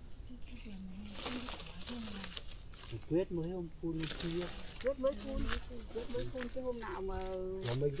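People talking quietly in Vietnamese, speech only.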